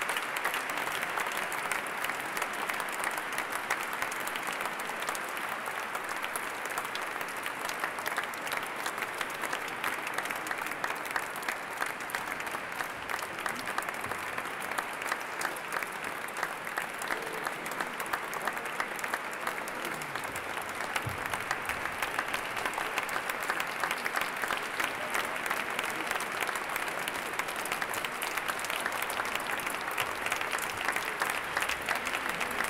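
Audience applauding steadily: a dense mass of hand claps.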